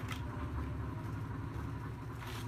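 A steady low mechanical rumble, with a fine even pulsing, in the background.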